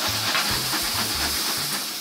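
Seared steak strips and whole green olives sizzling hard in a hot frying pan on a gas stove: a loud, steady hiss that sets in as a flame flares up from the pan, easing slightly near the end.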